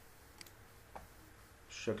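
Two light computer mouse clicks about half a second apart over quiet room tone, then a man starts speaking near the end.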